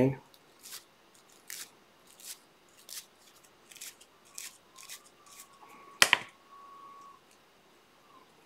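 Feather wing fibres for a salmon fly being brushed to separate and blend them: short, soft swishes, one roughly every three quarters of a second. About six seconds in comes a sharp double click, louder than the strokes.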